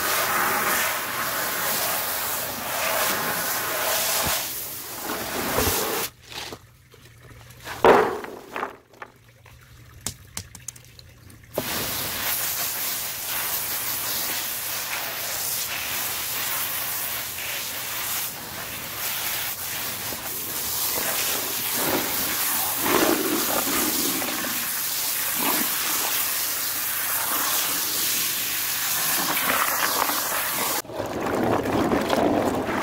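Muddy rinse water pouring and splashing out of a tipped rubber basin onto the ground. After a quieter stretch with a single knock about eight seconds in, a garden hose sprays water steadily.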